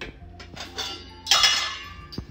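Stainless-steel masala dabba (round spice box) clinking and clattering as its metal lid is taken off and set down on the counter, with a few small clicks first and the loudest clatter about a second and a half in.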